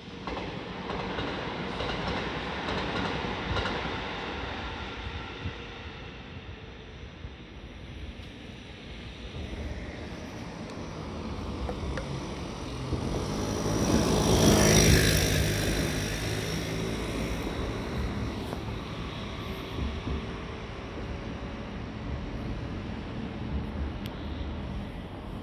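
Meitetsu electric train passing on the tracks, its wheels rumbling on the rails. It grows loudest about fourteen to fifteen seconds in, then eases off.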